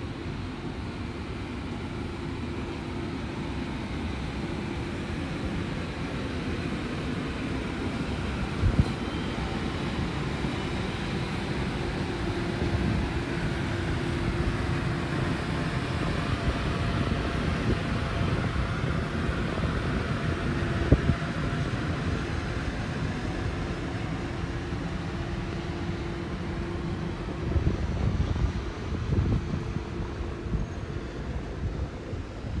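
Outdoor city ambience at night: a steady low rumble of distant vehicles that swells gently toward the middle and eases off again, over a faint steady hum. Two sharp knocks stand out, about a third of the way in and again past the middle.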